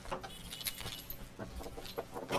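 Keys jangling at a door lock, with a few sharp metallic clicks and brief rings as the lock and latch are worked.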